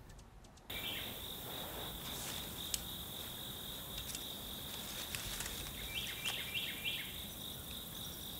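Insects trilling steadily at a high pitch, starting just under a second in. Near the end a few short rising chirps join in, with an occasional faint click.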